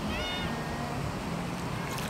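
A short high-pitched call that rises and then holds for about half a second near the start, over a steady low rumble.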